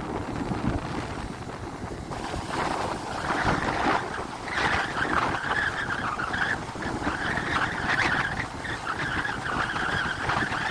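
Surf washing on the shore and wind buffeting the microphone, with a wavering, higher-pitched hiss joining in from about halfway through.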